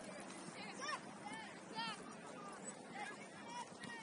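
Distant voices of players and coaches calling out across an open soccer field: several short shouts over a faint steady hiss of open air.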